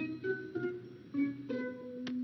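Light background music from the cartoon's score: a few separate plucked-string notes, the last one held for about half a second near the end.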